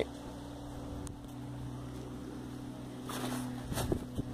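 A steady low engine-like hum, with a brief rustle about three seconds in.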